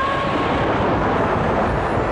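A loud, even rushing noise with no clear notes, filling the gap between two musical phrases of a film song's soundtrack.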